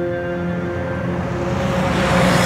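Sustained, sombre music chord that thins out, overtaken near the end by the rising whoosh of a vehicle passing close by.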